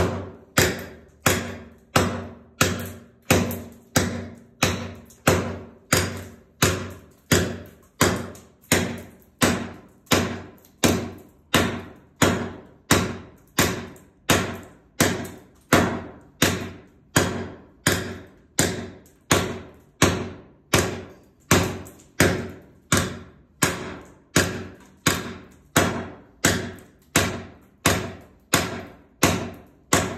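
Hatchet blade striking old VCT floor tiles in a steady, even rhythm of sharp knocks, a little more than one a second, chipping the vinyl tiles off the ceramic tile floor beneath.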